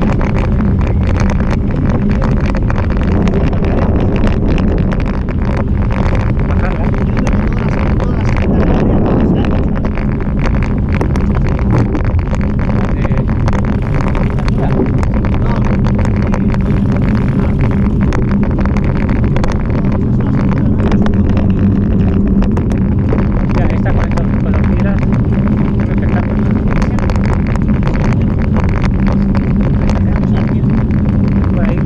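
Mountain bike riding up a gravel track, heard through the camera mounted on it: a steady rumble of tyres on gravel and wind on the microphone, with many small clicks and rattles from the stones and the bike.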